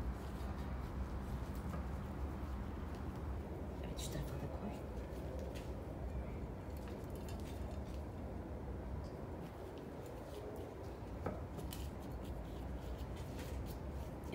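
Hands pressing potting soil down around a small succulent in a cup-shaped pot: faint scattered rustles and a few light clicks over a steady low hum.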